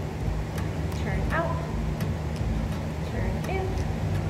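A steady low rumble with a few faint, muffled voice-like calls over it.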